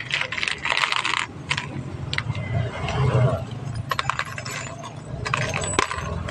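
Small metal bolts and nails clinking and rattling against a plate as a hand picks through them, in dense bursts of clinks near the start and again in the second half.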